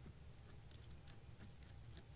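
Near silence with a few faint, light clicks: a riflescope and its mount being handled and seated on a crossbow's rail.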